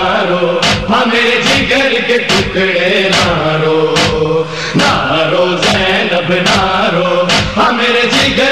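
Male voices chanting a Shia noha with no instruments, over a steady rhythm of sharp beats: the matam, or chest-beating, that keeps time in a noha.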